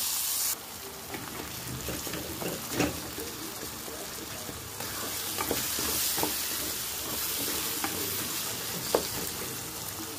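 Sliced onions and tomatoes sizzling in hot oil in a kadhai while a wooden spatula stirs them, with occasional knocks of the spatula against the pan. The sizzle drops about half a second in and rises again around five seconds.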